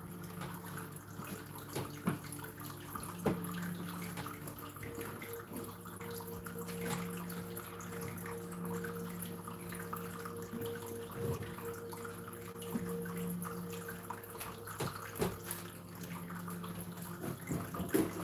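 A steady low hum made of several held tones that change pitch partway through, with a few light scattered knocks and clicks.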